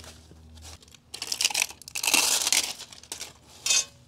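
Plastic bubble wrap crinkling and rustling in a run of bursts as new mower blades are slid out of it, starting about a second in and loudest in the middle.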